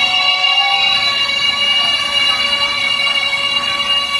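Live rock band's amplified electric guitars holding a long, ringing chord through the PA, several steady notes sustained without a break.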